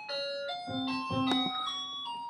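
Musical clock chiming a tune: a run of bell-like notes at different pitches, each still ringing as the next begins.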